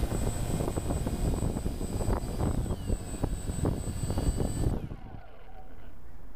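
DJI Phantom quadcopter's motors and propellers running on the ground after landing, with a thin high whine and irregular wind buffeting on the microphone, then cutting off abruptly about five seconds in, leaving a low steady hiss.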